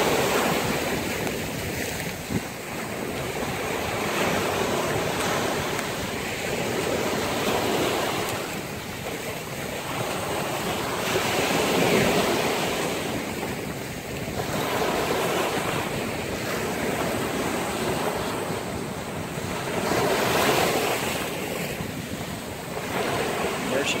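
Small surf breaking and washing up a sandy beach, the rush of water swelling and fading every few seconds.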